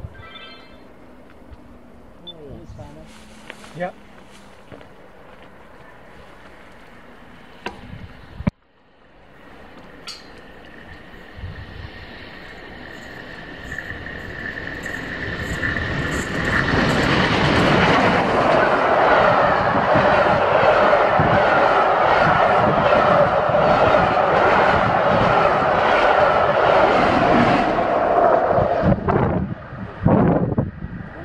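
The Flying Scotsman, a three-cylinder LNER A3 steam locomotive, passing with its train. The sound builds from about a third of the way in, stays loud and steady for about ten seconds, then falls away near the end.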